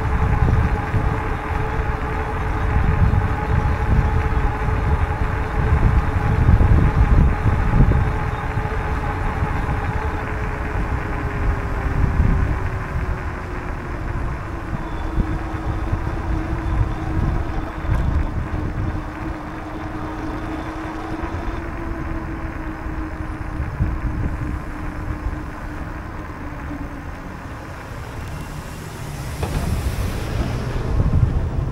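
Wind rushing and buffeting over the microphone of a camera on a moving bicycle, with a faint steady hum underneath that slides down in pitch a little after ten seconds in.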